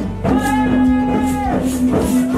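Music for the Biak Wor welcome dance: one long held note of about a second over regular rattling percussion beats.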